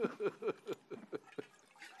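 Liquor glugging out of a bottle neck as a drink is poured, a quick run of gulping glugs about five a second that stops about a second and a half in.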